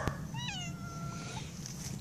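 Domestic cat meowing once, a drawn-out meow about a second long that dips slightly in pitch and then holds; a hungry cat begging to be fed. A short click comes just before it.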